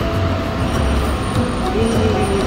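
City street traffic: a steady low rumble of vehicle engines, with background music playing over it.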